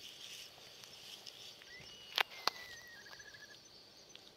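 A cat eating from a plastic bowl close to the microphone, with soft chewing and licking clicks. Two sharper clicks come a little past halfway.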